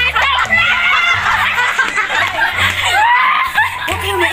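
A young woman laughing hard, with others laughing along, over background music with a low bass line.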